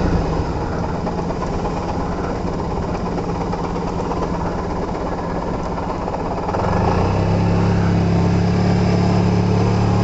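Large scooter's engine running while riding along a street, with road noise. The engine note is uneven at first, then grows louder and steady about seven seconds in.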